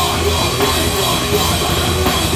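A heavy band playing live: distorted electric guitar and a drum kit with cymbals, with the vocalist screaming into a handheld microphone. The sound is loud and continuous.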